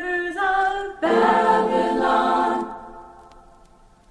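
Unaccompanied voices singing in harmony: a short phrase, then a long held chord starting about a second in that slowly fades away, leaving the last half second nearly quiet.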